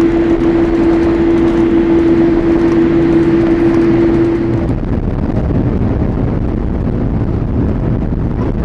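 Boeing 787 cabin noise on the ground: a steady rumble with a single steady hum-like tone over it. The tone cuts off abruptly about halfway through, leaving the rumble.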